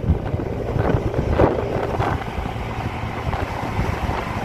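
Wind buffeting the microphone on a moving motorcycle, over the rumble of the engine and road noise.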